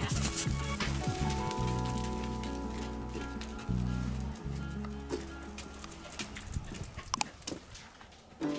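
Background music of sustained, stepwise-changing chords that gradually fades out toward the end, with a few faint clicks.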